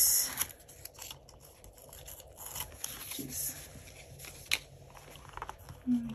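Light scraping and small clicks of cardboard packing being worked out from around a binder's silver metal rings, with one sharper click about four and a half seconds in.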